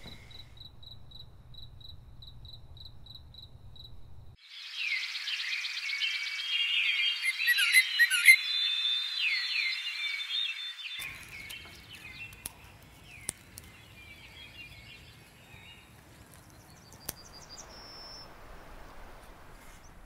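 A cricket chirps steadily, about three high chirps a second, over a low hum. It cuts off after about four seconds and birds start chirping and chattering in a busy, overlapping chorus, the loudest part. After about eleven seconds this gives way to quieter rural ambience with faint insect and bird sounds and a few sharp clicks.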